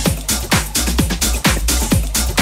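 Techno and house DJ set played loud through a club sound system: a four-on-the-floor kick drum at about two beats a second over deep bass and hi-hats.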